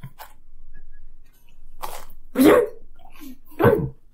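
Dog barking off-camera: a softer bark a little under two seconds in, then two louder short barks about a second apart.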